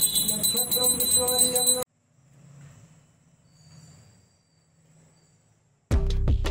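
A bell rung rapidly and continuously for about two seconds, then cut off abruptly into near silence with faint low murmurs; loud music with drum beats starts right at the end.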